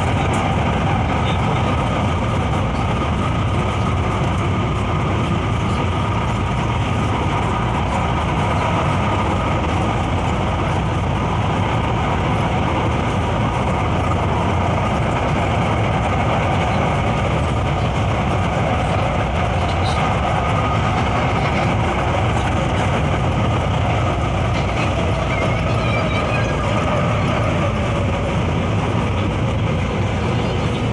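Steady running noise heard from inside a moving LRT Line 1 light-rail car: wheels on rails with a faint whine over it.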